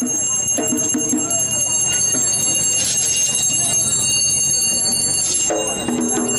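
Bells ringing continuously with a fast shimmer of high, steady tones. A group of voices sings short chanted phrases about half a second in and again near the end.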